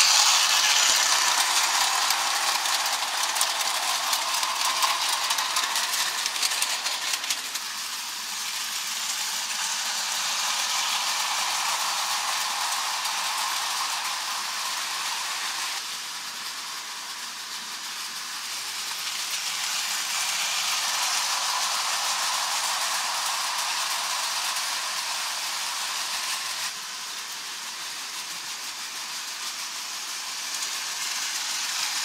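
Hornby O gauge tinplate model trains running on tinplate track: a steady metallic rattle and hiss of wheels and mechanism. It swells and fades as trains pass close by, and changes abruptly about halfway through and again near the end.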